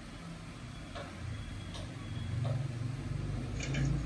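Low background hum that grows louder in the second half, with a few faint clicks.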